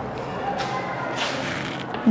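A few short, light taps and scrapes of chalk and a duster against a classroom chalkboard, over a steady low room hum.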